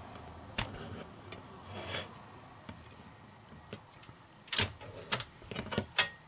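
Hard plastic hull parts of a model ship kit clicking and knocking as they are handled and fitted against each other. There are a few separate clicks early on, then a louder group of knocks about four and a half to five seconds in.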